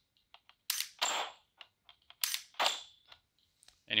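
Two dry-fire trigger pulls on an AR-15 fitted with a Mantis Blackbeard auto-resetting trigger, about a second and a half apart. Each is a pair of sharp clicks a third of a second apart: the trigger breaking, then the Blackbeard resetting it. Fainter small clicks of handling come between them.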